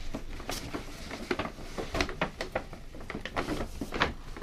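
Paper shopping bag rustling and crinkling as a cardboard shoe box is pulled out of it, a string of crackles and scrapes.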